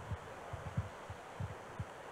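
Handheld microphone handling noise: a few soft, low thumps as the mic is passed from one man's hand to another's.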